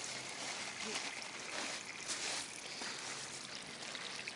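Steady trickle of water running from a PVC feed pipe into a pea-gravel aquaponics grow bed, fed by the system's pump.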